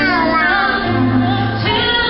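A woman singing live into a microphone over instrumental accompaniment, her voice gliding in pitch against sustained accompanying notes.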